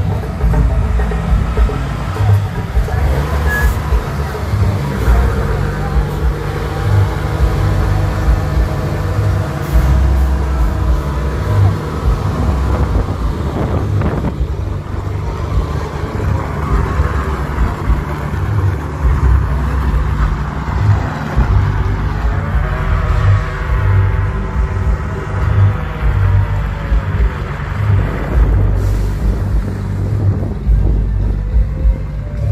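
Diesel semi-truck tractor units revving hard in tyre-smoking burnouts, engine pitch swelling up and down, mixed with loud music that has a heavy bass beat.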